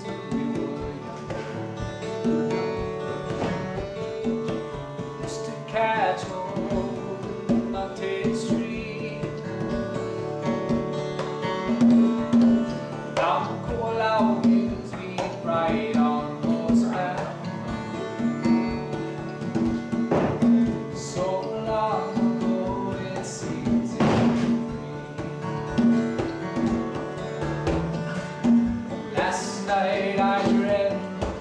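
Acoustic guitar strummed with a man singing, accompanied by a conga drum played with the hands.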